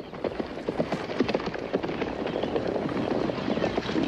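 Hoofbeats of a troop of cavalry horses riding in: many hooves clattering in a dense, irregular patter.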